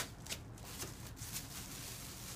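Handling noise close to the microphone: a sharp click at the start, then a few faint short rustles and ticks.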